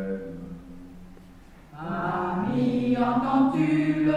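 Mixed chorus of men and women singing a musical-theatre song in French. A single low line holds quietly at first, then the full chorus comes in louder about two seconds in.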